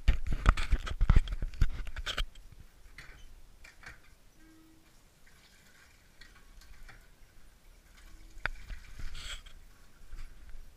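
A burst of knocks and clatter in the first two seconds, then water from a red hand pitcher pump, its handle worked by hand, pouring in a stream into a stainless steel sink, with a click and a short rush near the end.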